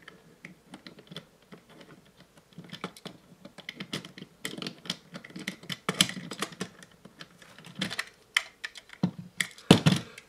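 Plastic parts of an electric pencil sharpener being handled and turned into place: irregular light clicks and small rattles, with a louder knock just before the end.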